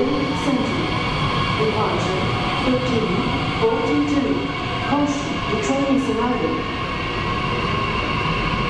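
Bombardier Talent 2 (DB Class 442) electric multiple unit pulling out of an underground platform, its electric drive giving a steady whine over the running noise, which carries in the tunnel station.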